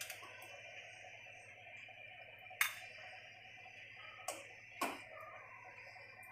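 Faint clinks of a serving ladle against the kadhai and a glass bowl as curry is ladled out: three short knocks, at about two and a half, just over four, and nearly five seconds in, over a low steady hum.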